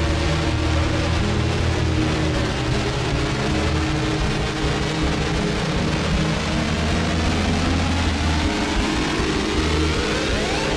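Fuzzrocious Empty Glass pedal's drone oscillator running through its harsh octave-up distortion: a dense, low, engine-like drone. Near the end its pitch sweeps steadily upward as the drone knob is turned.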